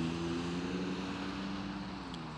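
Steady low engine drone with several even pitches, slowly fading, like a distant aircraft or vehicle passing.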